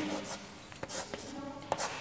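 Chalk writing on a chalkboard: faint scratching of the chalk with a few light taps as a word is written.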